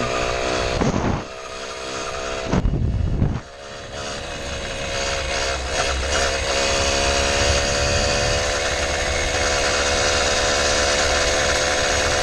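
Small two-stroke motorized-bicycle engine running under way at cruising speed. Its sound drops off twice in the first few seconds, with a brief loud low rumble between, then picks back up, rising a little in pitch, and runs steadily.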